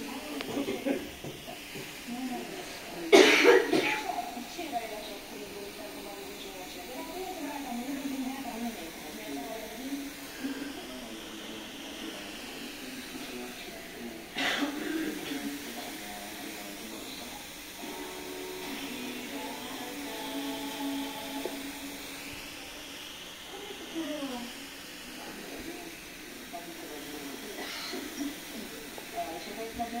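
A person's voice talking in a room, with two short, loud noisy bursts, one about three seconds in and one near the middle.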